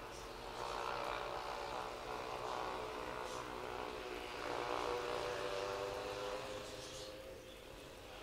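A steady droning sound of several held tones that swells twice and then fades, with a few faint high chirps over it.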